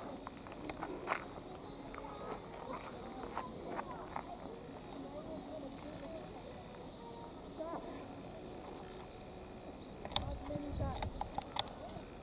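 Football match on a dirt pitch: scattered distant shouts and calls of young players, with sharp knocks of the ball being kicked. About ten seconds in, several louder kicks come in quick succession along with a brief low rumble.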